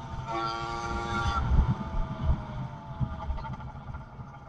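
110cc two-stroke bicycle engine running at high revs with a steady buzz that drops out briefly just after the start. About a second and a half in, the throttle eases off and the pitch falls slowly. An uneven low rumble runs underneath.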